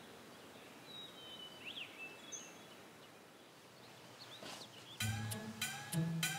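Faint outdoor ambience with a few high bird chirps, then background music of plucked string notes that starts suddenly about five seconds in.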